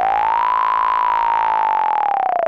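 Electronic music: a single synthesizer tone glides upward, holds high, then begins to slide back down near the end.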